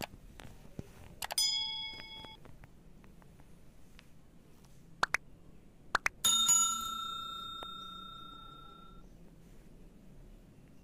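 Subscribe-button overlay sound effect: a mouse click and a short bell ding about a second in, then more quick clicks and a louder bell ring about six seconds in, which fades out over about three seconds.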